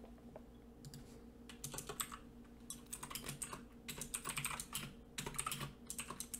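Faint typing on a computer keyboard: irregular runs of keystrokes starting about a second in, over a low steady hum.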